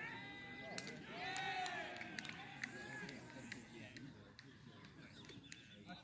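Faint, indistinct distant voices and drawn-out calls from players across a cricket field, with a few sharp clicks.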